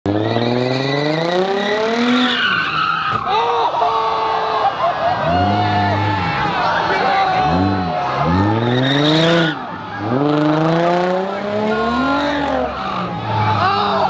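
A car engine revving hard, its pitch climbing and dropping over and over, with tyres squealing, as the car does burnouts or donuts. Crowd voices are mixed in.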